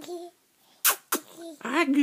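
Baby vocalizing: a short coo at the start, two sharp breathy bursts about a second in, then a wavering, sing-song babble near the end.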